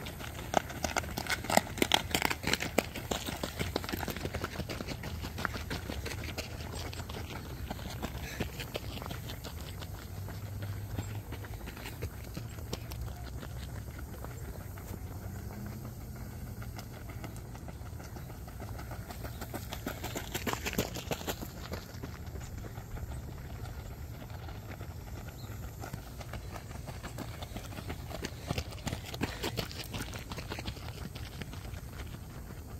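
Runners' footsteps crunching on a gravel path in quick strides, loudest in the first few seconds and again about twenty seconds in.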